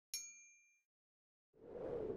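A bright bell 'ding' sound effect for the notification bell being clicked on a subscribe button: one sharp ringing strike that fades out in under a second. About one and a half seconds in, a whoosh of noise swells up and carries on.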